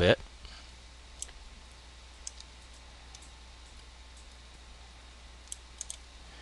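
Faint computer mouse clicks, a single one about a second in, two close together a little after two seconds, and a quick cluster near the end, while guides are dragged onto the canvas, over a low steady hum.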